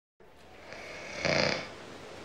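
A man snoring: after a moment of silence, one loud snore about a second and a quarter in, over a faint steady hiss of room tone.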